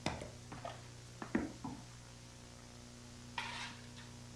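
A few light knocks and clicks in the first two seconds and a short rustle or scrape near the end, from an electric guitarist handling his guitar and gear. A steady electrical hum runs underneath.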